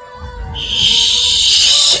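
A loud, hissing sound effect swells in about half a second in, holds steady and cuts off suddenly, over a faint steady musical drone.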